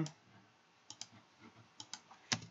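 Computer mouse clicks: two pairs of short, faint clicks, one about a second in and one near the end.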